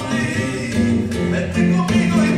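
Live flamenco music: a sung flamenco line over guitar accompaniment, with a few sharp percussive strikes.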